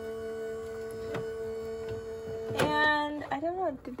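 Sizzix Big Shot Switch Plus electric die-cutting machine running with a steady motor hum as its rollers draw a thick Bigz die and cutting-plate sandwich through, helped along by hand. The hum stops about three seconds in.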